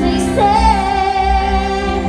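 Live band playing with a woman singing lead: a sung note rises into one long held tone about half a second in, over electric guitars, bass, keyboard and drums.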